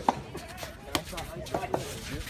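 Rackets striking a soft tennis ball in a rally, sharp pops about a second apart, the loudest at the very start.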